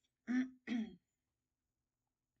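A woman clearing her throat: two short voiced rasps, one right after the other, in the first second.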